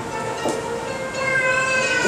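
Soft background music: a held chord of steady tones that grows a little stronger about halfway through, with a faint click about half a second in.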